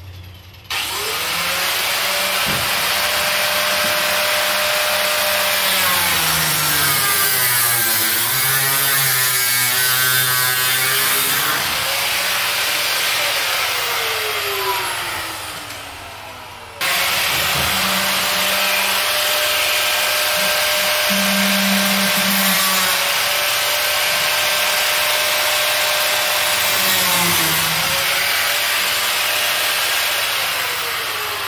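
Handheld electric power tool cutting into the steel bars of a cage. Its motor winds up, runs under load with a wavering pitch, winds down and stops about 17 seconds in, then starts again almost at once and keeps cutting.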